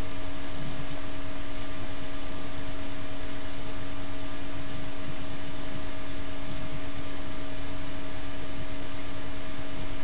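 A steady hum over a hiss, unchanging in level and pitch throughout.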